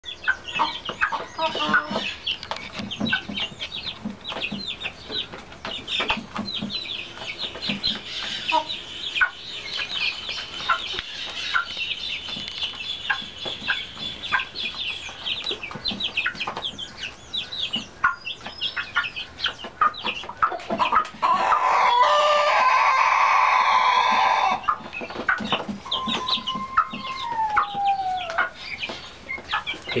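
Young chicks cheeping constantly, with many short falling peeps, mixed with chicken clucks. About 21 seconds in, a loud chicken crow-song holds for about three and a half seconds. The owner says his Músico Brasileiro hen just sang, so this is likely her song.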